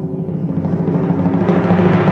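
Intro music for a stage performance: a timpani roll under sustained low orchestral notes, growing slightly louder.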